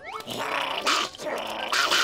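Cartoon growling and snarling from an old, moldy burger patty as it bites down on a crab's claw, in rough bursts.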